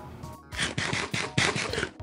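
Drinking from a Ramune soda bottle: irregular clicks and gulps, starting about half a second in, over background music.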